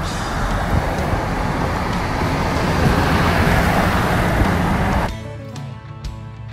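Road and wind noise from a moving car, swelling louder midway, under background music. It cuts off sharply about five seconds in, leaving only the music with guitar.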